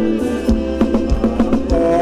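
Live Thai ramwong dance band music: a steady drum beat of about two strokes a second under held melodic notes.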